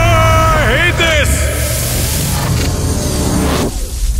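A man's long, high held scream that wavers and breaks off about a second in, over music with a heavy bass line.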